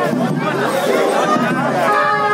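A crowd of people talking and calling out at once, many overlapping voices close by.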